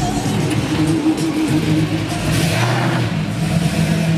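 1970 Buick Electra 225's big V8 running low as the car rolls slowly past, with a brief rise in the middle. Music plays alongside.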